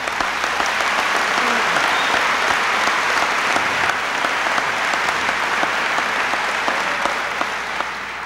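Large audience applauding, easing off slightly near the end.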